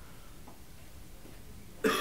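Quiet room tone with a faint tick about half a second in, then a short cough near the end.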